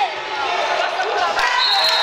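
A futsal ball being kicked and bouncing on the hard floor of a large sports hall, over a steady murmur of voices.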